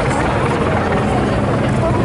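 A steady low mechanical drone, with voices talking over it.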